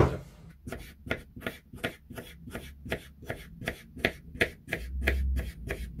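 Kitchen knife slicing a cucumber into half-rings on a wooden cutting board: quick, even strokes at about five a second that stop about five seconds in. A low rumble follows near the end.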